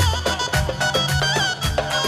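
Northern Jordanian dabke music played loud through a PA: a nasal, reedy mijwiz-style melody with quick wavering ornaments over a fast, steady drum beat.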